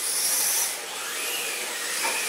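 Electric motor and drivetrain whine of a 1/10-scale RC drift car, the pitch rising and falling as the throttle is worked. It dips in loudness a little under a second in, then climbs again.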